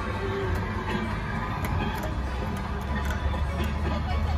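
Tourist road train on rubber tyres running along a road: a steady low engine and road rumble that swells a little past the middle, with faint music playing over it.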